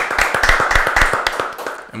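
People clapping their hands in a brisk run of applause that tails off near the end.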